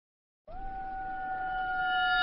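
A single held synthesizer tone, the opening swell of an intro music sting, that starts about half a second in and grows steadily louder at a fixed pitch.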